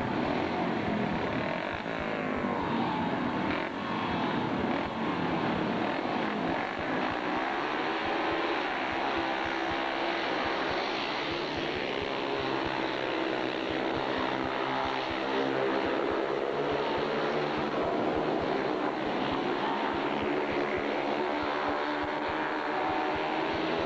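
Four speedway bikes' 500cc single-cylinder, methanol-fuelled engines racing: revving hard as they leave the start, then a continuous blend of several engine notes rising and falling in pitch as the riders go through the bends.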